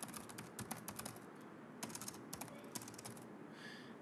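Faint typing on a computer keyboard: quick runs of keystrokes with short pauses between them.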